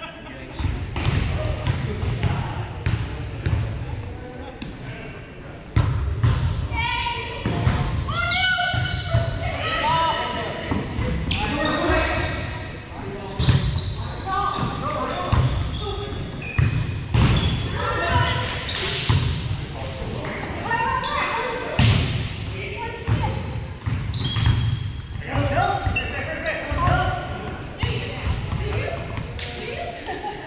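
Volleyball play on a hardwood gym court: repeated sharp smacks of the ball off players' hands and forearms and bounces on the floor, among the players' calls and chatter, echoing in the large hall.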